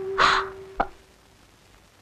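A single harsh bird call about a quarter second long, near the start, over the end of a held musical note. A short click comes just under a second in.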